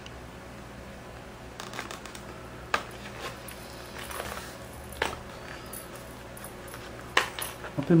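Paper being handled and stitched by hand: a few sharp crackles and clicks as the page is turned and the needle and thread are pushed and pulled through it, over a low steady hum.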